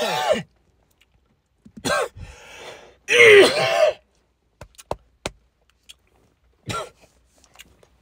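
A man coughing hard into his fist after a hit of THCA. One cough at the start, another about two seconds in, and a longer, harsh coughing burst around three to four seconds in, then a few faint clicks.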